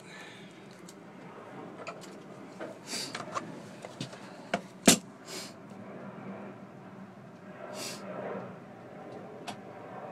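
Scattered light clicks and knocks of handling and tool contact around an engine block, the loudest a sharp knock about five seconds in, over a low steady hum.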